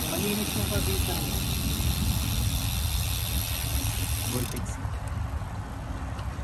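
Wind rumbling on the microphone while cycling, over the steady buzz of a bicycle's rear-hub freewheel as the rider coasts; the buzz cuts off suddenly about four and a half seconds in, as pedalling resumes.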